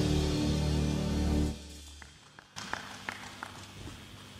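Saxophone with a live backing band holding a note, which stops abruptly about a second and a half in. A quiet stretch with a few faint taps follows.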